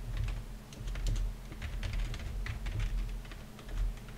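Computer keyboard being typed on: a quick, irregular run of key clicks as a line of code is entered.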